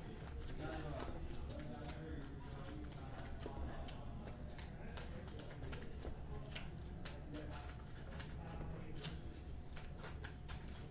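Trading cards and clear plastic card sleeves being handled close to the microphone: scattered light clicks and rustles over a steady low hum.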